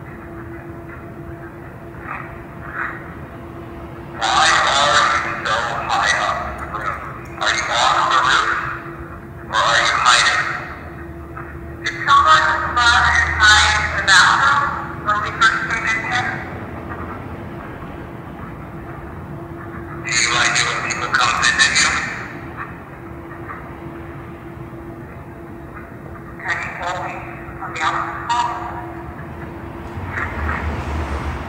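People's voices talking in short bursts, too unclear to make out, over a steady low hum.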